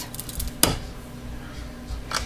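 A bar of soap being handled on a wooden soap cutter: one sharp knock about half a second in, with a few faint clicks before it, over a steady low hum.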